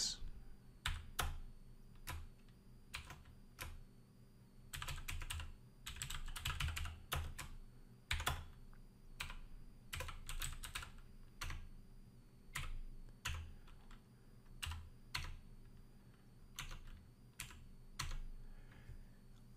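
Typing on a computer keyboard: irregular runs of keystrokes broken by short pauses.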